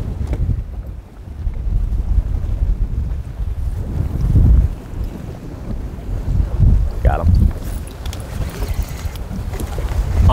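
Wind gusting across the microphone in uneven low rumbles, with choppy waves lapping against the boat.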